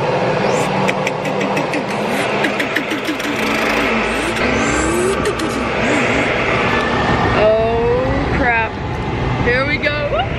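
Jet airliner cabin during the takeoff roll: a loud steady rush of engine and runway noise with the cabin rattling, and a voice exclaiming near the end.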